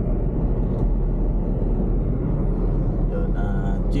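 Steady low rumble of engine and road noise heard inside the cabin of a Suzuki S-Presso. Its three-cylinder engine is cruising at about 50 km/h in fourth gear. A man's voice comes in near the end.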